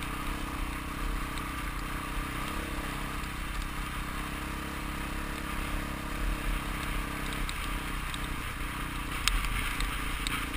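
Dirt bike engine running steadily while riding on a gravel road, heard from a helmet-mounted camera. About seven and a half seconds in the engine note wavers and drops for a moment, and a few sharp clicks come near the end.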